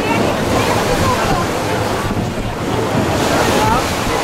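Wind buffeting the microphone and water rushing along the hull of a ship under way at sea, over the steady low hum of the ship's engine.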